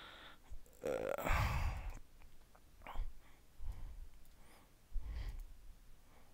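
A man sighs into a close microphone, a long breathy exhale about a second in, followed by a few quieter breaths.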